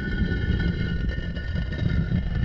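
Cinematic logo-sting sound effect: a steady low rumble with a few thin high tones held above it.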